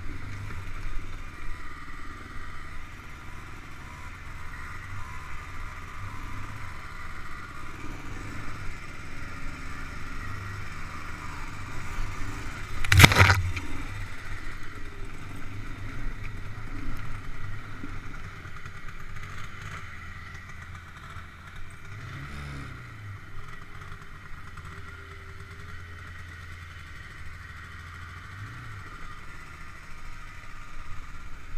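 ATV engine running on a rough dirt trail, heard from the rider's helmet, steady with small rises and falls in throttle. There is one loud sharp knock about thirteen seconds in, and about two-thirds of the way through the engine note drops and picks up again.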